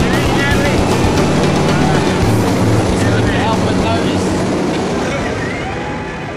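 Steady drone of a skydiving jump plane's engines and rushing air in the cabin, with voices shouting over the noise.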